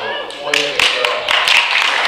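A room of people clapping, starting about half a second in and going on steadily, with voices over the start.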